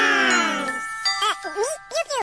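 A high-pitched voice draws out one long, gently falling sound, then bell-like chime tones ring on steadily under short squeaky vocal sounds in the last second.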